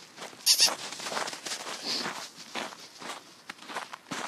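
Footsteps crunching and squeaking in snow, irregular steps about every half second, with a sharp, loud crunch about half a second in.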